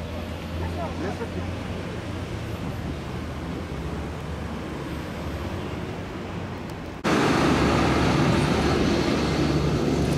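Outdoor city street ambience: a steady rumble of traffic with faint voices. About seven seconds in it abruptly turns louder and fuller.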